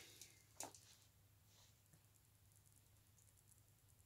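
Near silence: room tone with a low hum, and one faint click a little over half a second in.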